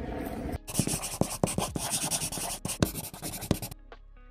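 Scribbling sound effect, a fast run of scratchy pen-on-paper strokes, accompanying an animated hand-lettered title. It stops abruptly near the end, where a few soft musical notes begin.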